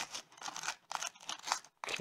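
Velcro strap of a walking boot being threaded through a plastic buckle, pulled tight and pressed down: a run of short scratchy rustles and scrapes.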